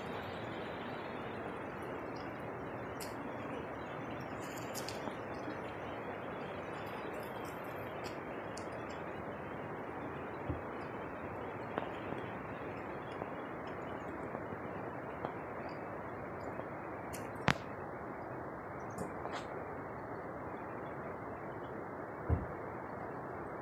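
Steady rushing of a fast-flowing mountain river, with a few light clicks; the sharpest comes about two-thirds of the way through.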